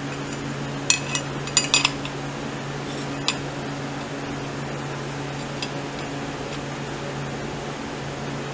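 Steel clutch plates of a Royal Enfield Bullet clinking against the clutch drum as they are fitted by hand: a quick run of light metallic clinks about a second in and one more a little after three seconds. A steady low hum runs underneath.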